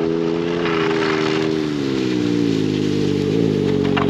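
Snowmobile engine running steadily, its note sagging slowly in pitch after about two seconds as the machine slows.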